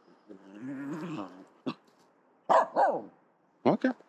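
Finnish Spitz barking: a few sharp, high barks that fall in pitch, in the second half, the last one short, near the end.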